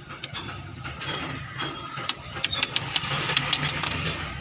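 Quick metallic clicks and taps, denser in the second half, from a piston ring compressor being worked around a piston seated in a diesel engine block's cylinder. An engine idles in the background with a steady low hum.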